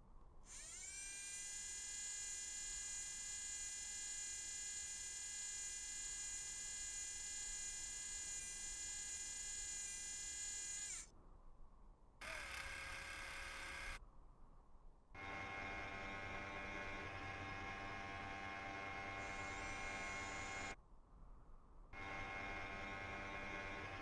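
Electric motor whine of the animated Perseverance rover's robotic arm actuators, in four separate runs: the first rises in pitch as it starts about half a second in, holds steady for about ten seconds and cuts off; a short second run ends with a falling pitch; two more steady runs follow with short silences between.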